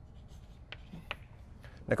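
Chalk writing on a blackboard: a few short, faint scratches and taps of the chalk.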